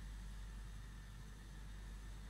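Faint steady room tone: a low hum under a light even hiss, with no distinct event.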